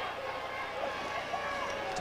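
Steady stadium crowd noise with faint, indistinct voices.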